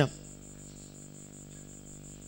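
A pause in the talk holding only background noise: a steady high-pitched whine that pulses quickly and evenly, over a low electrical hum.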